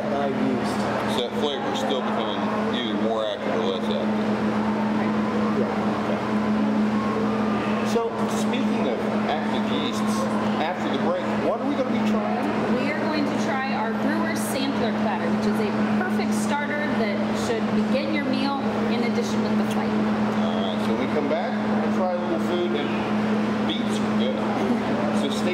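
A man talking in conversation, over a steady low hum.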